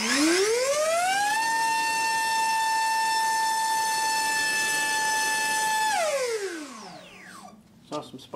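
Brushless electric motor of a HobbyZone AeroScout S2 RC plane spinning a Master Airscrew racing-series 6x4.5 three-blade propeller on a static thrust test: a whine that climbs quickly over the first second and a half, holds one steady pitch at about 18,000 rpm for about four and a half seconds, then falls away as the motor spools down near the end.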